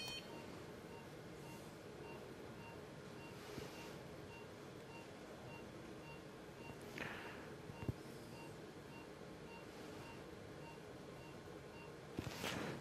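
Faint electronic beeps from operating-room equipment: a short cluster of higher beeps at the very start, then a soft single tone repeating at a steady rate, with a couple of brief soft hisses and a small click.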